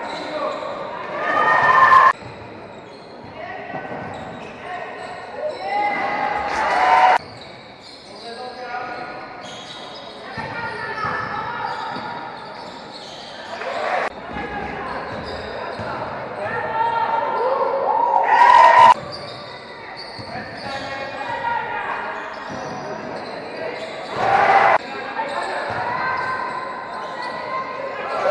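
Basketball game sound in a large echoing sports hall: a ball bouncing on the court floor amid players' voices calling out. The sound cuts off abruptly several times where one play gives way to the next.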